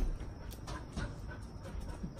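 Faint, brief dog noises from Goldendoodles over low background noise.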